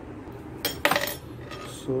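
Two sharp metallic clinks about a second apart from the start, the second ringing briefly: the stainless-steel luggage scale and its metal hook being handled.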